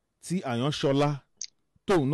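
A man speaking into a studio microphone, with one short, sharp click in the pause about halfway through.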